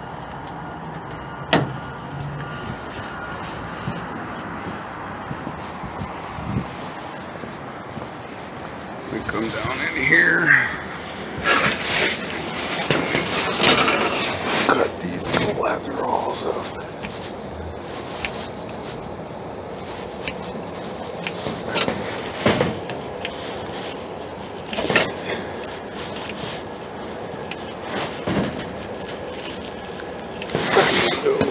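Wire cutters snipping through HVAC control wires with sharp clicks, among rustling and knocking as the wires and cutters are handled. A busier stretch of handling comes about a third of the way in.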